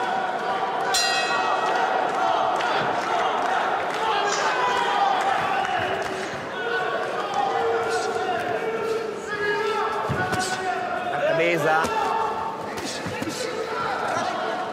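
Indistinct shouting voices from the ringside crowd and corners in a large hall during a boxing bout, with sudden thuds of punches landing, the sharpest about a second in.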